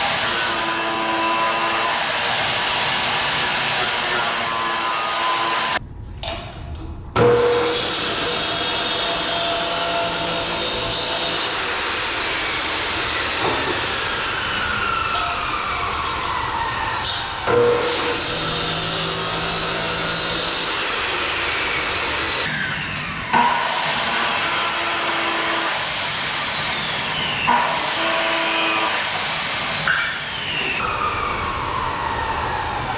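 Electric chop saw cutting heavy-gauge steel stud, running loud and steady through the metal. It stops briefly about six seconds in and starts cutting again a second later, and a few sharp knocks come in the second half.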